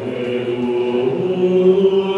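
A sampled vocal, choir-like sung tones, played back from a software sampler: steady sustained notes, with a lower note entering about a second in and holding.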